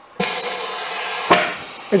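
Compressed air hissing from the Morgan G-100T injection press's pneumatic clamp as it closes, with a sharp click about a second in before the hiss tapers off. The clamp stops short of locking with its usual clunk, so the mold sits too high.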